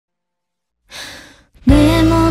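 A singer's audible breath, a short airy exhale about a second in, then the song comes in with a held note over a steady bass.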